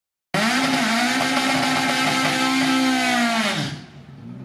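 Drag car's engine held at high, steady revs on the start line, then the pitch drops sharply near the end as the car launches.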